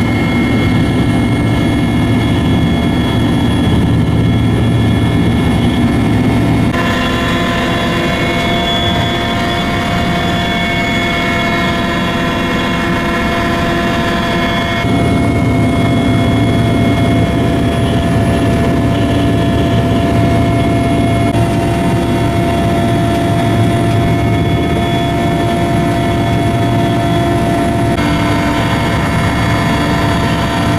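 Military Mil Mi-17 transport helicopter in flight, its turbine engines and rotor making a loud, steady drone with several steady whining tones over it, heard from on board. The sound shifts abruptly a few times where shots are joined.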